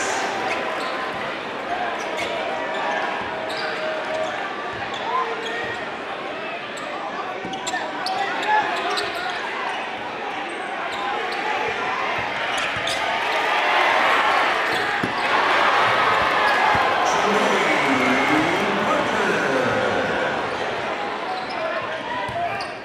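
A basketball being dribbled on a hardwood gym floor amid the chatter and shouts of a crowd in a large, echoing gym; the crowd grows louder about halfway through.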